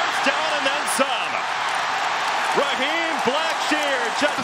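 Large stadium crowd cheering as a steady wash of noise, with individual voices shouting above it.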